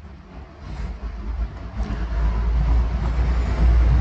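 A low rumble that grows steadily louder.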